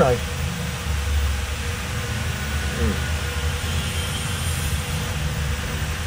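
A steady low rumble of background noise with a faint hiss over it, after a short spoken word at the start.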